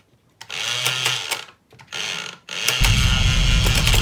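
Whack-a-crocodile toy's motor mechanism starting up: two short runs in the first half, then running steadily from about three seconds in, with plastic clicks from the crocodiles and mallet.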